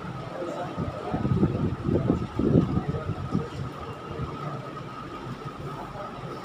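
Handling noise on a clip-on microphone worn by a person writing at a whiteboard: low rustling and bumping, loudest about one to three and a half seconds in, over a steady thin high whine in the recording.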